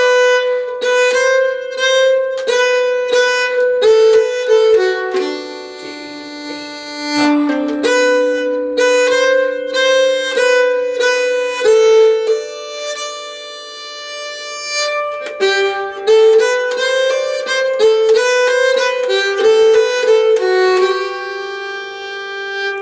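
Nyckelharpa (Swedish keyed fiddle) bowed slowly, playing the B part of a Swedish polska as a single melody line in even steps, with a couple of longer held notes.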